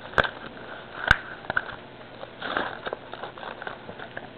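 Handling of trading-card packs and plastic packaging on a tabletop: a few sharp clicks, the loudest about a second in, and a short soft rustle about halfway through.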